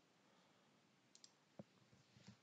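Near silence, with a couple of faint computer mouse clicks about a second and a half in.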